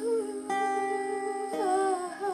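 Acoustic guitar chords ringing under a held, wavering female vocal melody, with a new chord struck about half a second in and another near the end.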